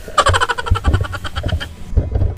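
A diver's laugh, a gurgling rattle of about ten quick pulses a second that fades out near the end, with a few low knocks under it.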